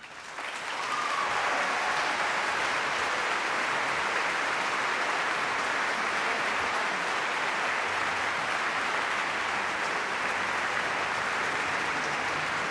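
Large concert-hall audience applauding, the clapping swelling within about a second of the final orchestral chord dying away, then holding as a steady, dense ovation.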